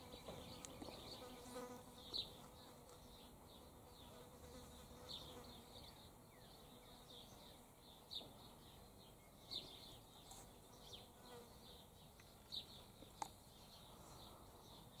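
Near silence, with a fly buzzing faintly and steadily, and faint high chirps now and then.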